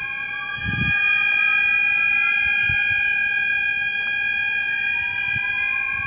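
A fire alarm sounding: a steady, high electronic tone is held throughout, overlaid by a slow siren sweep that rises in pitch over several seconds and then starts again near the end. There is a brief low bump about a second in.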